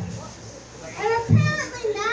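Speech only: a woman talking into a microphone in a high, sliding voice, starting about a second in after a brief lull.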